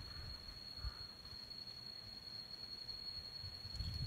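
A faint, steady high-pitched tone held at one pitch over quiet background hiss.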